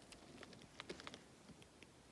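Several faint, light clicks of a Nitecore NM01 flashlight's rear push button being pressed to step through its brightness modes up to 1,000 lumens, over near silence.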